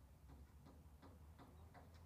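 Near silence: faint background with light ticks about three times a second over a steady low hum.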